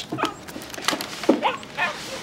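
A puppy whimpering and yipping: about four short high cries, each sliding down in pitch.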